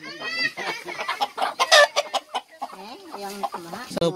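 Domestic chickens clucking in a string of short calls, with a loud, high call right at the start.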